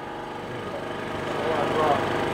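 A steady engine-like hum with faint voices in the background, growing a little louder toward the end.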